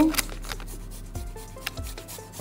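A garlic clove rubbed along a fine rasp grater in short, irregular scraping strokes, grating it onto the dough.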